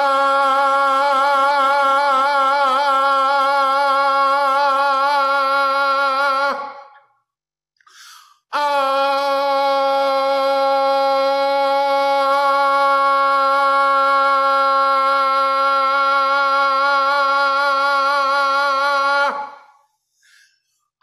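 A man's voice toning a long open-mouthed "ah" on one steady pitch for about six seconds, wavering slightly early on. After a brief breath, he holds a second long tone on the same pitch that slides down as it fades out near the end.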